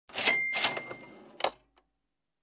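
Cash-register "cha-ching" sound effect for a channel logo: a bright bell ring over a clatter that fades within about a second, then a single sharp click.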